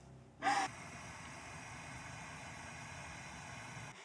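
A woman's single sharp gasping sob about half a second in, followed by a steady, even hiss that cuts off abruptly at the end.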